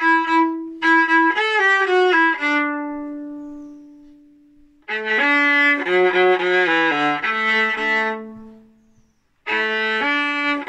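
Solo viola playing a simple melody in short bowed phrases. Each of two phrases ends on a long low note that fades away over a couple of seconds. After a brief silence near the end, playing starts again.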